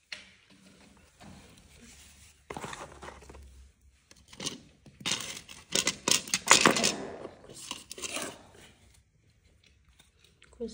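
Hands handling a plastic thermostat, its loose back plate with screws, scissors and a cardboard package on a wooden floor: irregular clicks, rattles and rustles, busiest and loudest from about five to seven seconds in.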